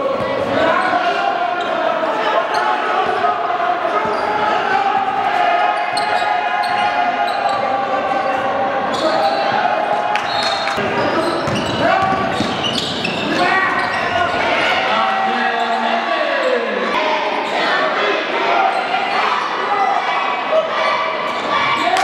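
Basketball being dribbled on a hardwood gym floor during a game, with indistinct voices of players and spectators throughout.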